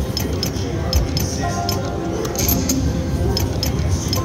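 Video slot machine's electronic game music and sound effects during a spin, with short chiming clicks as symbols drop into place, over casino background chatter.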